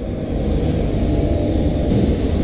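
Traffic passing on a rain-soaked road, with a swelling hiss of tyres on wet tarmac, over a steady low rumble of wind buffeting the microphone.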